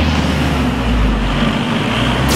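Loud, steady rushing rumble of a car driving in, with a heavy low rumble underneath.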